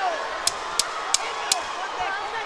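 Four sharp, evenly spaced knocks, about three a second, over the steady noise of an arena crowd during a boxing round.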